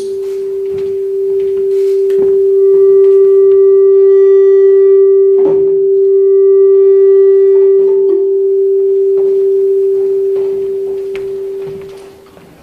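Public-address system feedback: one loud, steady howl held at a single pitch, with fainter higher ringing tones joining in the middle and a few knocks, dying away near the end.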